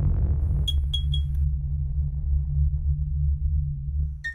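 Logo-intro sting of electronic sound design: a deep, steady drone with three quick high pings about a second in.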